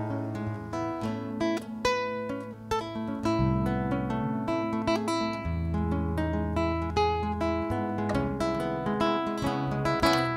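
Solo classical guitar played fingerstyle: a melody of plucked notes over low bass notes that ring on and change every second or two.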